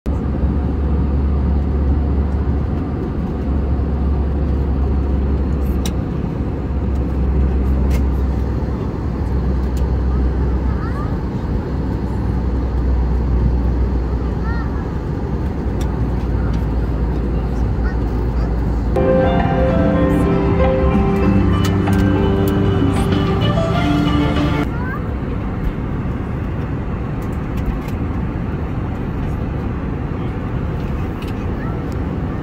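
Steady airliner cabin noise, the engines and airflow heard from inside the cabin, heavy at the low end. About two-thirds of the way in, a few seconds of music with held notes plays over it and then stops.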